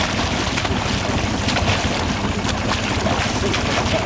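A boat's engine runs with a steady rumble under wind noise on the microphone, with water splashing and rushing alongside.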